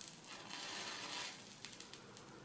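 Match head flaring up with a short soft hiss after a drop of concentrated sulfuric acid lands on it, the acid reacting with the chlorate in the head. The hiss starts about half a second in and lasts about a second.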